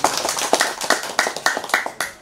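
A group of people clapping: a dense, irregular run of claps that thins out near the end.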